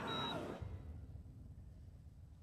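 Soundtrack of a projected film heard through room speakers: a short stretch of busy sound in the first half second, then a low rumble fading steadily away as the segment ends.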